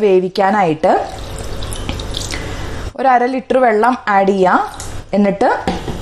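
Water poured from a jug onto grated beetroot in a pressure cooker, a steady splashing pour that starts about a second in and lasts about two seconds. A woman talks before and after the pour.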